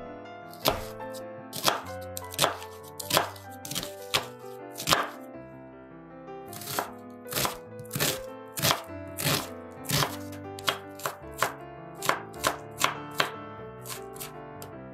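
A large kitchen knife chopping a red onion on a wooden cutting board. The blade knocks sharply on the board about once or twice a second, pauses around the middle, then chops faster near the end.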